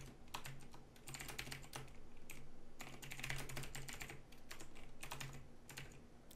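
Typing on a computer keyboard: a fast, uneven run of soft keystrokes.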